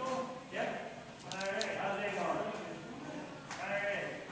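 A person's voice making drawn-out, wavering vocal sounds without clear words, in three stretches, with a few small clicks about a second and a half in.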